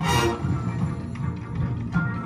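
High school marching band and front ensemble playing; a sudden loud hit right at the start rings out, then the music carries on, strongest in the low register.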